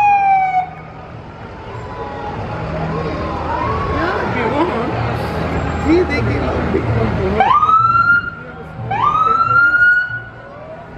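Fire vehicle siren sounded in short bursts: a falling wail dies away under a second in, then two quick rising wails near the end, each held briefly and cut off. Crowd voices and the low rumble of the passing vehicles fill the gap between.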